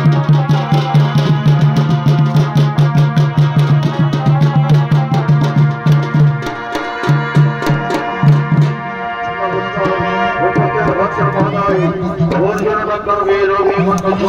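Chhau dance music: fast dhol drumming with the low boom of a dhamsa kettle drum under a shehnai playing a wavering melody. About nine seconds in the drumming thins out and the shehnai carries on almost alone.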